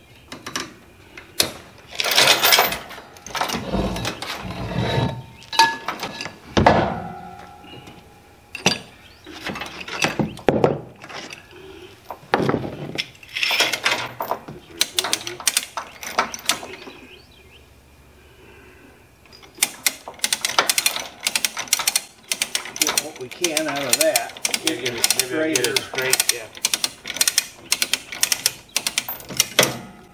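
Hand-ratchet come-along being worked under heavy load to drag a 4600-pound drill press across a trailer deck: a fast run of pawl clicks fills the last ten seconds. Before that, scattered chain clanks and metal knocks as the hook and chain are reset.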